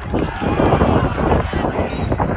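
Several players' voices talking over each other at a football field sideline, mixed with a rapid patter of short clattering knocks like footsteps running on turf.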